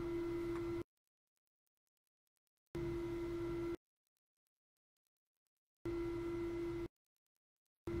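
Steady electrical hum with a few fainter higher tones above it, heard in four blocks of about a second each. Between the blocks it cuts off sharply to dead silence, as if switched or gated.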